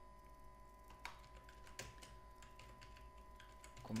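Faint, irregular keystrokes on a computer keyboard as a short line of text is typed.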